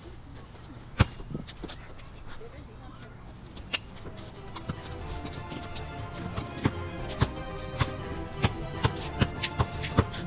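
Basketball dribbled on an outdoor hard court: a couple of single bounces, then steady dribbling at about two to three bounces a second from about two-thirds in, quickening near the end, over background music.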